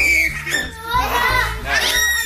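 Young children's high-pitched voices calling and chattering, over background music with a steady low bass line.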